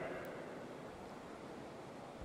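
Steady background ambience of a large sports hall: an even hiss with no distinct sounds.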